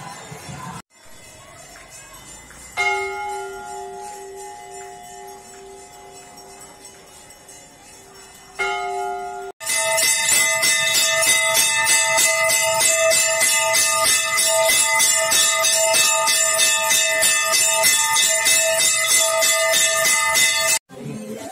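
Hanging brass temple bell struck once, its tones ringing on with a slow pulsing hum and fading, then struck again. After that the bell is rung rapidly and continuously, loud and unbroken.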